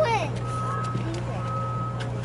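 Electronic beeper sounding a single steady high beep about once a second, each beep lasting about half a second, over a steady low hum.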